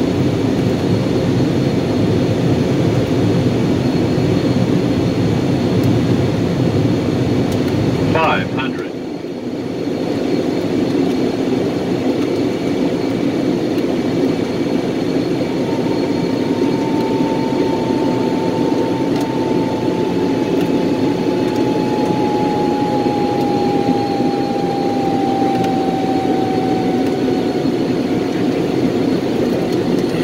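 Steady drone of a light aircraft's engine and airflow heard inside the cabin on final approach. It dips briefly about a third of the way in. From about halfway a thin whistle-like tone slowly falls in pitch.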